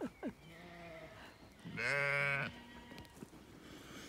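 Zwartbles sheep bleating close up: a quieter, longer call, then one loud bleat lasting under a second, a little before the middle.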